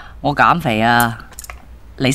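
A voice speaking or calling out, one drawn-out utterance with its pitch sliding, followed by a few light clicks.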